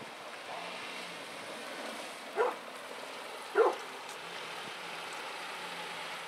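A dog barks twice, about a second apart, over the low steady sound of a car creeping along a snowy driveway.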